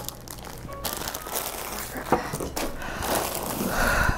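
Plastic bags and bubble wrap crinkling and rustling as packaged parts are handled and set down, with a few light knocks among them.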